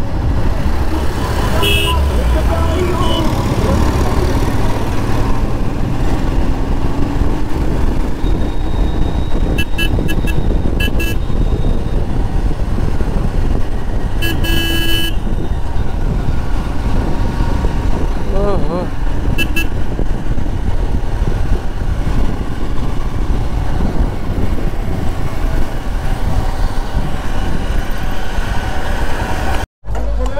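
Royal Enfield Himalayan's single-cylinder engine running under way, over a steady low rumble of road and wind noise. Vehicle horns beep several times, the longest and loudest about halfway through.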